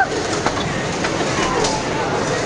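Small combat robots driving about the arena floor: a steady mix of motor and arena noise with a few light clicks and knocks.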